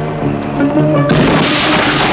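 Quirky synth music with held notes, then about a second in a sudden loud hissing burst of high-voltage electrical arcing cuts in over it and keeps going: the sound of a 66,000-volt substation flashover as a person touches the live equipment.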